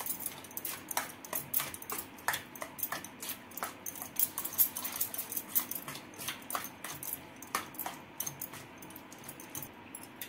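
Steel spoon stirring a wet curd and bottle gourd mixture in a stainless steel bowl, with many irregular light clinks and scrapes of the spoon against the metal.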